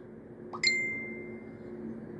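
A single bright ding about half a second in, ringing for about a second as it fades, over a faint steady low hum.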